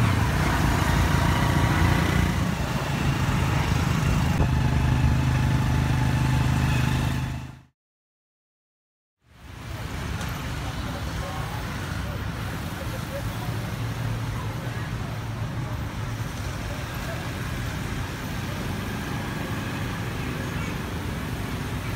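Tuk-tuk's motorbike engine running steadily under a passenger riding through street traffic. It cuts off abruptly about seven and a half seconds in, and after a second and a half of silence a quieter, steady hum of street traffic with passing motorbikes follows.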